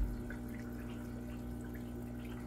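Aquarium filter running: water bubbling and trickling with small scattered drips over a steady low hum.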